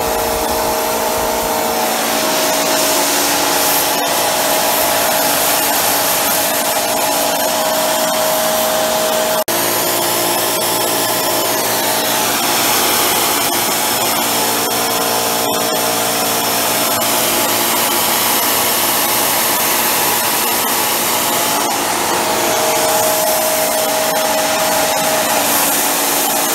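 A small high-intensity micro burner running hot, with a loud, steady rush of flame noise over a few steady hum tones. The hum shifts slightly about a third of the way through.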